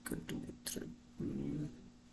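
Faint, short vocal sounds: a few brief murmurs, then a half-second hum or whine, with a couple of sharp clicks. A steady low electrical hum runs underneath.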